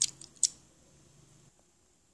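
Small plastic Kinder Ovo toy figure turned and handled in the fingers, giving a few sharp plastic clicks in the first half-second, then quiet.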